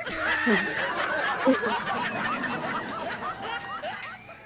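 Several people laughing together, a steady tangle of overlapping laughs and snickers that dies down near the end.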